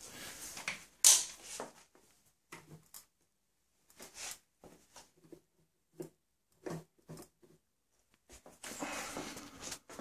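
Scattered faint clicks and fumbling noises as table-lamp switches are worked, with a sharp knock about a second in.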